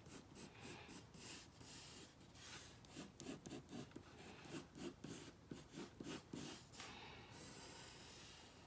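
Pencil drawing on paper: a run of faint, short scratching strokes, a few each second, ending in a longer, smoother stroke.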